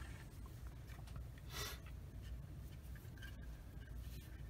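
Faint scraping and rubbing of a hobby knife blade on small plastic model parts as they are cleaned up, with one brief, louder rasp about a second and a half in.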